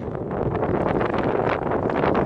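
Wind buffeting a phone's microphone in a steady rumbling rush.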